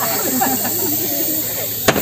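Aerosol snow-spray cans hissing steadily as they are sprayed, under crowd voices, with a single sharp pop near the end.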